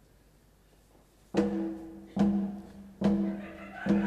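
Opera orchestra striking four loud accented chords with timpani, about one every 0.8 s, each ringing out and fading before the next. The first second before them is near silent.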